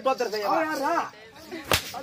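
A twisted cloth whip cracking once, sharp and brief, near the end.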